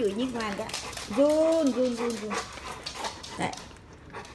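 A dog whining and vocalizing in drawn-out, pitched calls while demanding a treat: a short call at the start, then a longer one about a second in that rises and falls.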